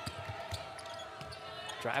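Basketball being dribbled on a hardwood court: a few thuds over steady arena background.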